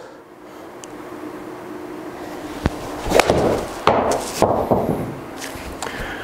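A pitching wedge striking a Titleist Pro V1x golf ball: one sharp click about two and a half seconds in, followed over the next two seconds by several duller thumps and rustles as the ball hits the simulator screen and drops.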